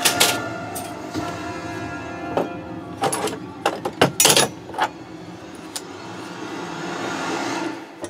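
Background music with sustained tones, with a few sharp clicks about three to four seconds in.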